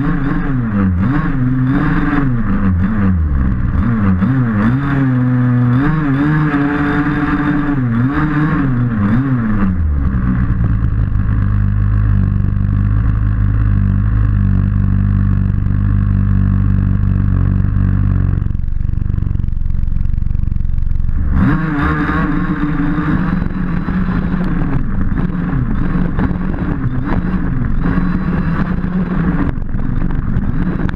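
Losi DBXL 1/5-scale buggy's two-stroke petrol engine heard from onboard, revving up and down over the first ten seconds, then holding a steadier note. The revving picks up again after a short dip about two-thirds of the way through, over rattling from the chassis on rough ground.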